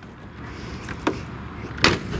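The hood of a Mercedes-Benz S600 (W221) being shut: a faint click about a second in, then one loud thud as it closes near the end.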